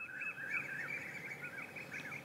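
Small birds chirping in the background: a quick, continuous run of short, high, repeated notes.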